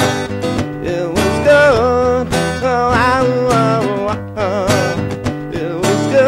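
Acoustic guitar strummed in a steady rhythm over layers looped on a loop pedal, with a sung melody line wavering in pitch above it.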